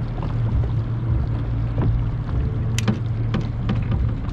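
Motorboat engine running steadily with a constant hum, and a few sharp knocks or clicks close together about three seconds in.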